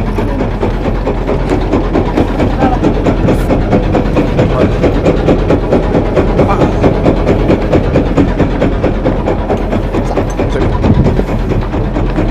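Small wooden fishing boat's engine running steadily under a continuous hiss of wind and water.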